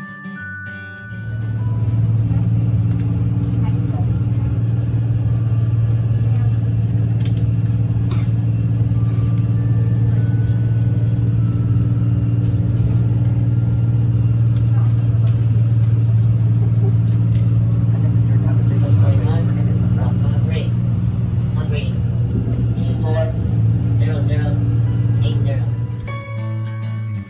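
Shuttle bus driving, heard from inside the passenger cabin: a steady, loud low hum from the drivetrain and road.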